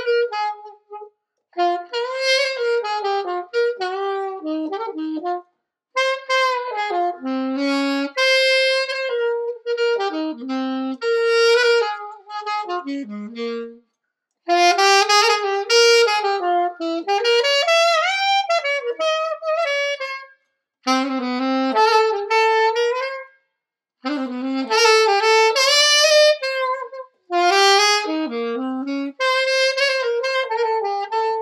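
Unaccompanied saxophone playing a melody in phrases of a few seconds, broken by short pauses for breath. The reed is new and being broken in.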